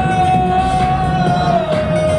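Live hip-hop music played loud through a PA, heard from the audience, with a heavy bass beat and one long held note that drops slightly in pitch near the end.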